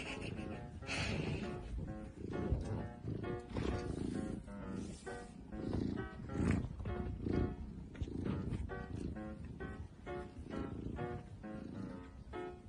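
A domestic cat purring close to the microphone, a low rumble while it is stroked, under background music of repeated plucked notes.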